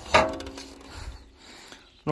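A single sharp knock just after the start, ringing briefly with a steady tone that fades within about a second, followed by faint handling noise.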